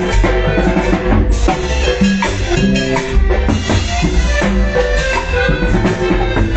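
Live cumbia band playing an instrumental stretch: drum kit and cymbals keep a steady dance beat over a heavy bass line.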